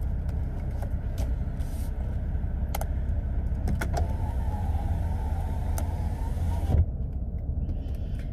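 A car's electric window motor running for about three seconds and stopping with a thump, over the steady low rumble of the car; a few light clicks come before it.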